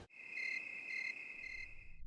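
Crickets chirping: a steady high trill with a brighter pulse three times, about every half second or so, cut off abruptly at the end.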